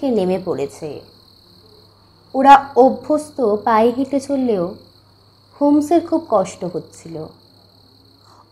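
Steady, high-pitched chirring of crickets, a night-time ambience laid under a spoken narration, with a faint low hum beneath.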